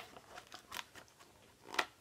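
Pages of a paper picture book being turned by hand: a few faint, crisp paper clicks and rustles, the sharpest right at the start.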